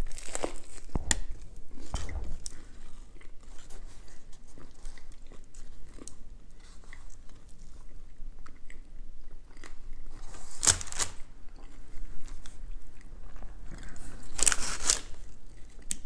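Close-up biting into a sub sandwich layered with crispy fried onions, then chewing with a crunch, with a few sharp crunches in the first couple of seconds and two louder noisy bursts later on.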